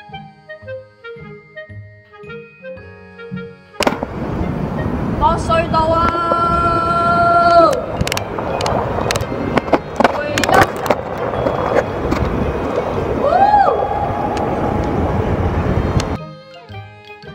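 Background music with clean stepped notes, then an abrupt cut about four seconds in to loud wind rush and rolling noise on a phone microphone carried on a moving bicycle through a concrete underpass. Scattered sharp clicks come through the rush, and two long held tones sound over it, the second sliding up at its start.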